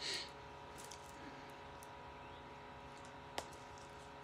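Snaps on a baby sleeper being pulled open by hand: a few faint clicks and one sharper snap pop about three and a half seconds in.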